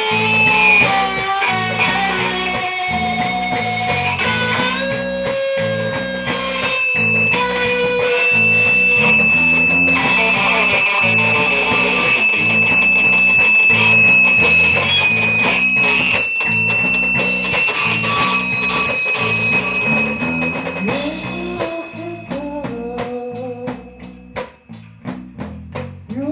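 Live rock band playing an instrumental passage: electric guitar holding long, sliding high notes over a steady drum-kit beat with cymbals. The playing thins out and gets quieter near the end.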